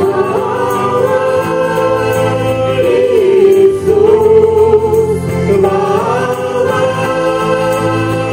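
Small amplified vocal ensemble singing a sacred song in harmony, in long held notes that move to a new chord every two or three seconds, over a quiet instrumental accompaniment.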